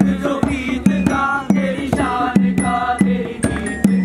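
Voices chanting a rhythmic sung refrain in short held phrases, with a drum struck about twice a second.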